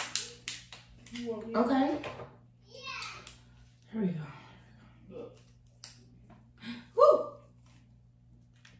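Crab shell being cracked and picked apart by hand: a run of short, sharp clicks and snaps. Brief wordless vocal sounds and mouth noises come in between, the loudest near the end.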